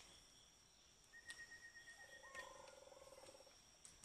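Quiet forest ambience: faint steady insect drone, a thin whistle-like tone about a second in, then a short trilling animal call around two seconds in, with a few faint clicks.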